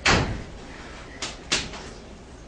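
A loud thump, then two sharper knocks close together about a second later.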